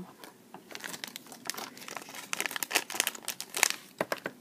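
Clear plastic bag crinkling as it is handled and rummaged through, a run of irregular crackles that grows busier in the second half.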